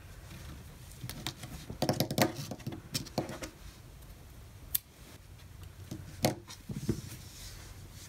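Quiet handling of yarn and a crocheted mitten, soft rustles and scattered light clicks, with a sharp snip of small embroidery scissors cutting a yarn tail a little under five seconds in.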